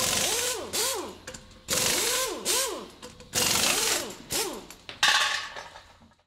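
A power tool run in short trigger bursts, two at a time, each whine rising and falling in pitch over a hiss; the last burst near the end is the loudest.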